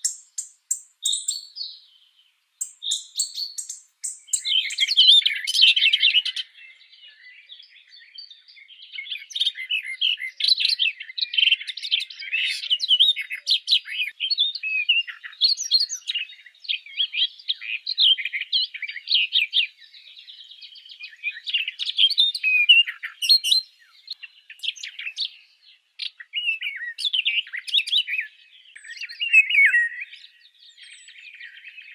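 Birds chirping and twittering, many quick calls overlapping, sparse for the first few seconds and then a dense chatter.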